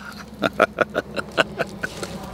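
A man laughing softly, a run of short breathy pulses at about five a second.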